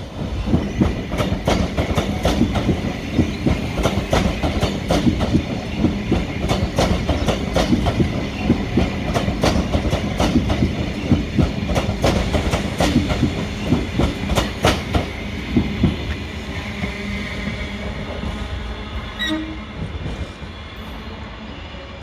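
Queensland Rail New Generation Rollingstock electric multiple-unit train passing at speed, its wheels clicking rapidly over the rail joints above a steady rumble. The sound fades as the train draws away in the last several seconds.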